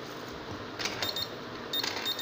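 An RFID motorised door lock's card reader gives a high electronic beep near the end as a card is presented, confirming the card is read and accepted. Before it come a couple of short clicks.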